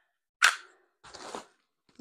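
A single sharp knock about half a second in, followed about a second in by a short, quieter rustle, the sound of something being picked up or set down and handled.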